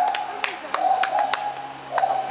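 White-handed gibbon calling: short, level hoots, one right at the start and a longer one about three quarters of a second in, with scattered sharp clicks.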